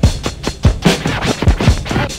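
Hip hop DJ track: turntable scratching over a beat, short scratches sliding up and down in pitch over deep booming kick drums.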